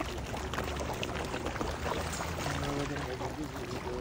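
A crowd of fish splashing and churning at the water's surface in a feeding frenzy: a busy, continuous patter of many small splashes.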